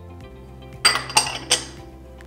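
Spatula tapping against a small glass dish: three sharp clinks about a third of a second apart, over steady background music.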